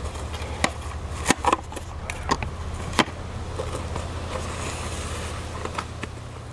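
Cling film being pulled off a dispenser roll and stretched over a plastic mixing bowl: crinkling, crackling plastic with several sharp clicks and snaps, then a steadier rustle as the film is smoothed down over the rim.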